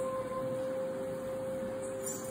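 Group of women's voices holding one long, steady sung note, without guitar strumming.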